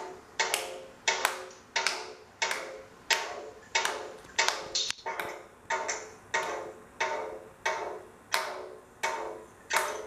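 A child clapping her hands in a steady rhythm, about three claps every two seconds, each clap with a short ringing tone.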